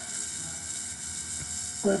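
Steady low background noise with a faint hum, the recording's room tone, with no distinct strikes or strokes.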